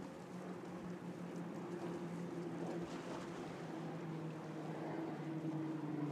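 A boat engine droning steadily over a haze of wind and water noise, its pitch dropping slightly about halfway through.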